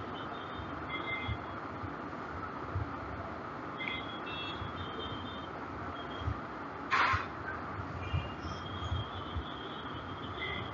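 Steady low background noise with scattered faint, short high-pitched tones. A brief sharp noisy sound about seven seconds in is the loudest moment.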